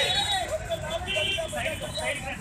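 People talking over a steady low rumble of road traffic.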